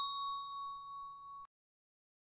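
A ding sound effect ringing out and dying away, one clear tone with a few higher ones over it, cut off suddenly about one and a half seconds in.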